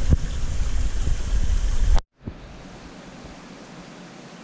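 Water rushing into an aquarium with a loud, steady rushing and deep rumble: the flow turned up for a water change after a formalin–malachite green treatment. It cuts off suddenly about halfway through, leaving a much quieter steady hiss of background noise.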